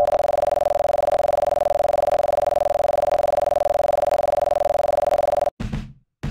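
A steady, buzzing electronic tone held for about five and a half seconds, then cut off suddenly, followed near the end by a few drum hits.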